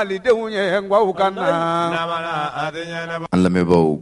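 A voice chanting a melodic, pitch-bending line over a steady low drone, in a radio jingle; a talking voice cuts in about three seconds in.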